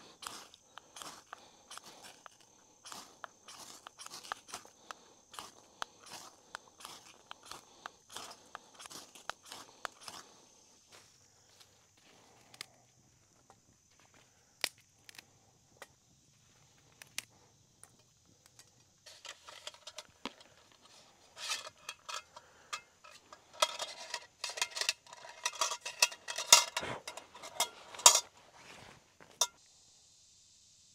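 A ferro rod scraped repeatedly with a knife, about two strokes a second for the first ten seconds, throwing sparks to light wood shavings in a folding steel stove. Later, a run of ringing metal clanks and rattles as the steel stove, its grate and a metal pot are handled, loudest near the end.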